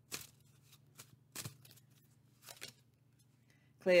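Oracle cards being handled as a card is drawn from a deck: three or four short, crisp card snaps spaced about a second apart, over a faint low hum.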